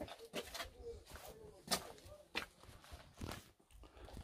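Faint footsteps and scuffs on a stone and dirt floor: a handful of soft, irregularly spaced steps.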